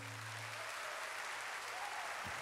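Audience applauding, an even clatter of many hands, while a low acoustic guitar note dies away in the first moment.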